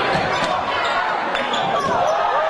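Live basketball game sound in a gym: a crowd of voices talking and calling out steadily, with a basketball bouncing on the hardwood court.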